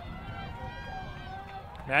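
Faint, distant voices calling and shouting across an open playing field during play.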